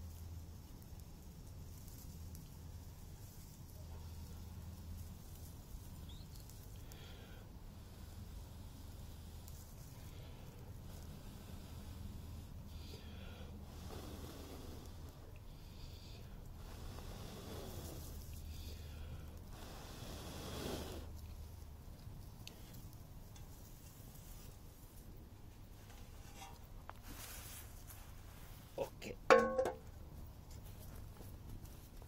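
Long, soft breaths blown one after another into a smoking dry-grass tinder bundle, coaxing a bow-drill ember up into flame. A short, loud burst of sharp clicks comes near the end.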